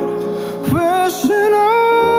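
A man sings a slow R&B ballad to soft band accompaniment, gliding between notes and then holding a long note from just past halfway.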